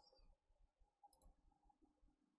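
Near silence with a single faint computer mouse click about a second in.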